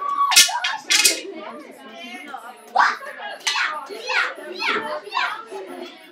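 Girls shrieking and calling out in play. Two sharp cries come close together near the start, then about five falling shrieks follow one after another.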